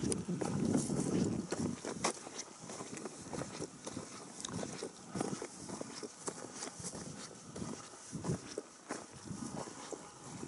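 Footsteps of a person walking over sandy, gravelly ground and grass: irregular crunching steps, with a louder low rustle in the first second and a half.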